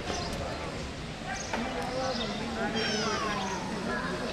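Background voices of people talking outdoors, with a high cry that falls steeply in pitch near the end.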